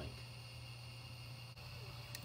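3D printer running as a print begins, heard faintly: a steady low hum with a few thin, steady high-pitched tones.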